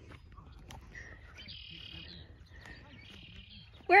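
Faint bird calls, two short bursts of high chirping over a thin high whistle, above a low rumble of wind on the microphone.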